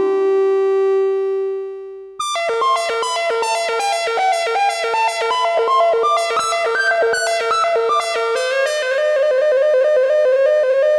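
EML 101 analog synthesizer played from its keyboard: a held note fades out over about two seconds, then a fast run of short, bright notes, about five a second, climbs and falls in pitch.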